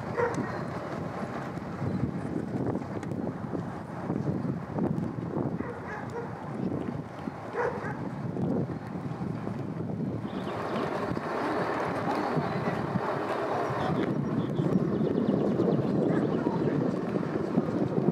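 Wind buffeting the microphone outdoors: an uneven, gusting rumble and hiss that shifts and grows a little louder about halfway through.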